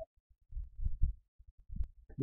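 Irregular low thumps with a few faint sharp clicks, mostly in the second half, as a computer mouse is handled and clicked to pick a tool and drag out a box.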